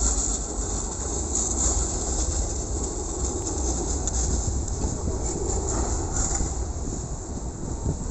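Yellow city tram running on its rails: a steady rumble of outdoor traffic noise.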